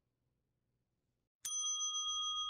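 Near silence, then about a second and a half in a single bell-like chime strikes and rings on steadily. It is an editing sound effect marking the start of the next numbered cause.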